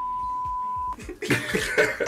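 A steady 1 kHz censor bleep lasting about a second, cutting off a spoken year, then laughter.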